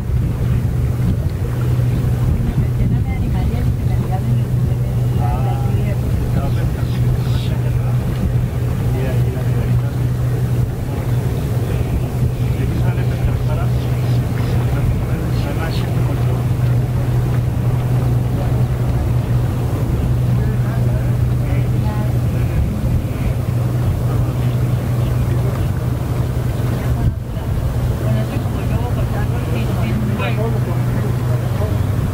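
Steady low engine drone of boats on the harbour water, mixed with wind on the microphone and faint distant voices.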